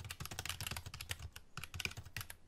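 Faint keyboard-typing sound effect: rapid, irregular key clicks accompanying on-screen text being typed out, with a short lull about one and a half seconds in.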